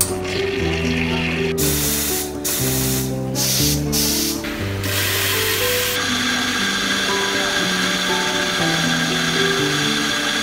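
Background music, with a few short bursts of hiss in the first half. From about six seconds in, an espresso grinder runs with a steady whirring hiss.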